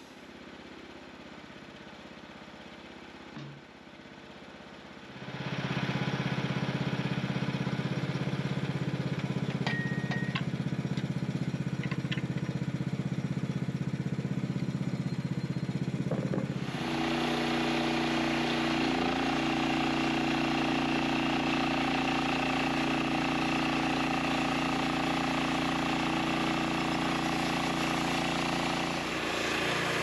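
Small gasoline engine of a Norwood LumberMate portable bandsaw sawmill running steadily. It comes in loud about five seconds in and shifts to a different pitch about seventeen seconds in.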